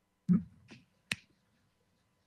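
A brief murmured "hmm", then two sharp clicks about half a second apart, the second the sharper.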